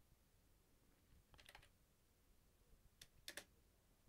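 Faint computer keyboard clicks in near silence: a short run of taps about a second and a half in, then two more around three seconds in.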